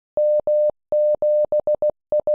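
Morse code sent as a single beeping tone: dah-dah, then dah-dah-dit-dit-dit, the letters M and 7, the start of the callsign M7FRS.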